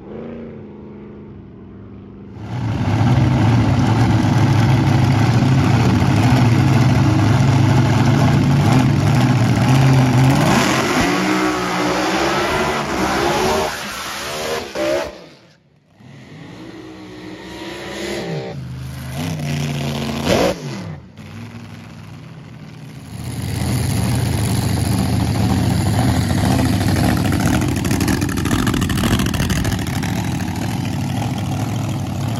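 Drag racing car engines at full loudness in several cuts. First an engine held at steady high revs for about ten seconds, its pitch then sweeping down and up. After a break comes a softer stretch of revving as a car does a smoky burnout. Near the end a supercharged short-wheelbase drag car's engine runs loudly and steadily at the starting line.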